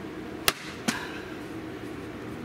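Two sharp snaps of a DeWalt staple gun firing staples through carpet into wood, about half a second apart, the first louder.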